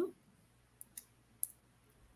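Small, cheap cutting pliers snipping the leads of an LED on a salvaged DVD-drive circuit board: three short, faint clicks near the middle.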